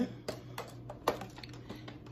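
A few light clicks and taps of plastic product packaging being handled and set down, the loudest about a second in.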